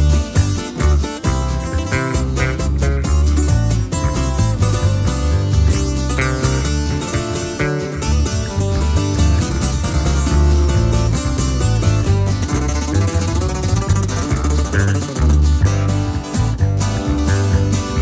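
Instrumental break of a norteño-style song: two acoustic guitars, one of them a twelve-string, picking and strumming over an electric bass guitar line, with no singing.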